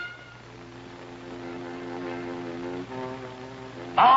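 Cartoon motorboat engine sound effect: a steady drone that grows louder and steps up slightly in pitch about three seconds in.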